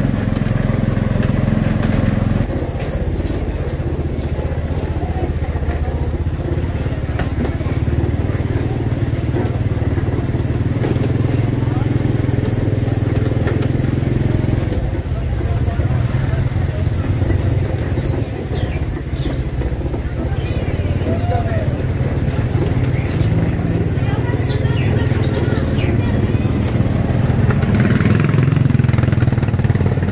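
Motorcycle engine pulling an odong odong trolley, running steadily at low speed with an even low drone. People's voices are heard here and there over it.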